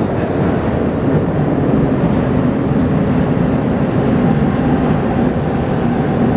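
Tokyu Ōimachi Line train running into an underground station platform: a loud, steady low rumble of wheels and motors.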